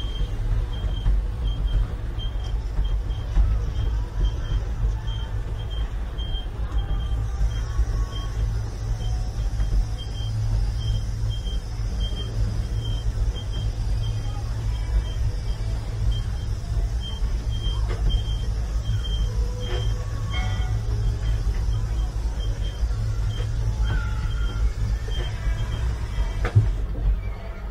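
Steady low rumble of a Woodstock Gliders ride car in motion, with a faint high beep repeating about twice a second.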